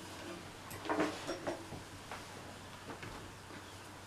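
Faint handling noise as one ukulele is set down and another picked up: a few soft knocks and rustles, the clearest about a second in.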